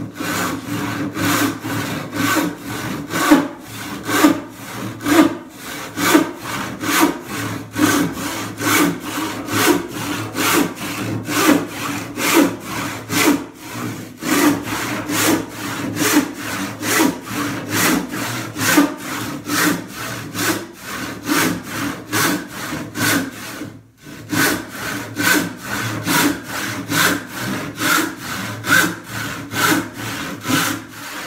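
Hand rip saw ripping a softwood board lengthwise, cutting out a leg blank: a steady back-and-forth rasp at about two strokes a second, with one brief pause about 24 seconds in.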